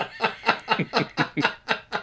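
Men laughing: a run of short, quick bursts of laughter, about five a second.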